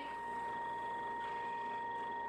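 A steady high-pitched electronic whine with a fainter tone above it, over a low hiss: background noise of the recording, with no other sound.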